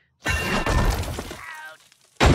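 A sudden loud crash with shattering, about a quarter second in, fading over about a second and a half.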